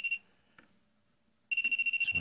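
Tacklife CM01A clamp meter's non-contact voltage detector beeping. There is one short high beep at the start. About a second and a half in, a rapid run of high-pitched beeps begins as the jaw nears the live hot wire, signalling that voltage is detected.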